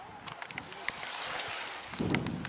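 A small group of racing cyclists passing close by: a whoosh of tyres and air that builds over about a second, with scattered light clicks.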